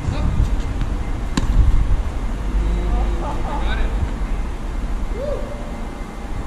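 A tennis ball struck once by a racket about a second and a half in, a single sharp knock, over a steady low rumble.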